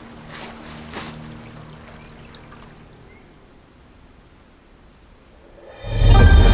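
Quiet film soundtrack: faint low hum and background hiss with two soft clicks, about half a second and a second in, fading lower. Loud music swells in sharply just before the end.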